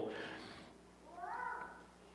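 A faint, short high-pitched cry with a slight bend in pitch, about a second in, lasting well under a second, after the echo of a man's voice dies away in the room.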